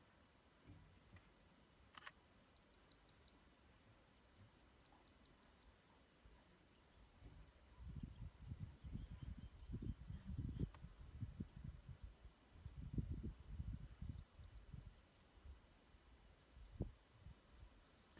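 Faint birdsong: a small bird sings two short runs of about five quick falling notes, then twitters near the end. Low rumbling bursts come and go through the middle and are louder than the bird.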